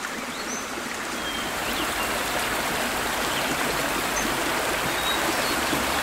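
A stream running steadily, a continuous rush of flowing water.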